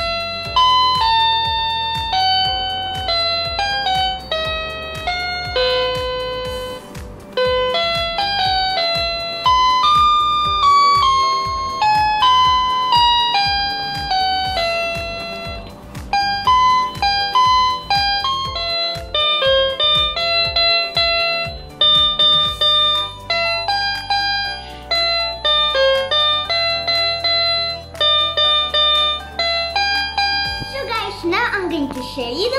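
MQ-6106 61-key toy electronic keyboard played by hand: a simple melody of single notes picked out one after another, with short gaps between phrases.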